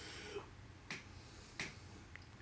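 Two faint, sharp clicks, about a second in and again two-thirds of a second later, over low background noise.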